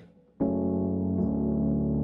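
Native Instruments Scarbee Rhodes electric-piano sound played as sustained, filtered chords with a mellow tone. A chord comes in about half a second in and moves to a new chord with a lower bass note just past a second.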